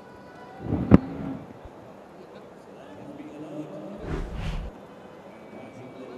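A single sharp knock of a cricket ball being struck at the crease, about a second in. It is heard against a steady background of stadium crowd noise and music, with a low rumble a little past the middle.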